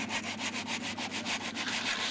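Aluminium straightedge drawn back and forth across a fresh mortar levelling bed, giving quick, even rasping scrapes, several a second.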